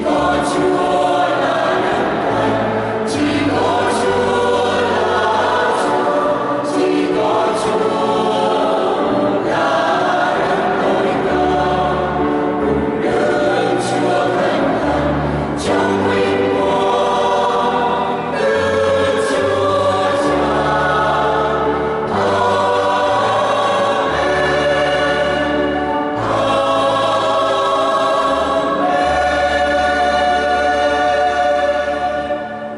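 Mixed choir of women and men singing a Vietnamese Catholic hymn in parts, a steady unbroken sung passage with sustained low notes beneath.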